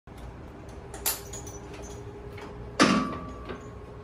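Metal hardware of a belt squat machine being handled as the lifter hooks in: a light click about a second in, then a loud metallic clank that rings briefly, just before three seconds.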